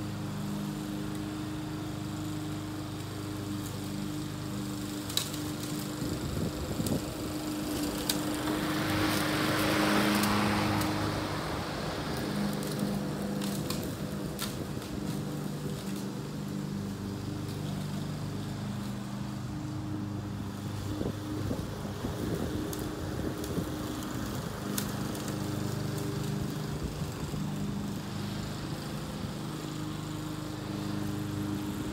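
Gas walk-behind push mower's engine running steadily while it is pushed across the lawn cutting grass, heard from a distance. About ten seconds in, a broad rushing sound swells up and fades again, and a few sharp clicks follow a few seconds later.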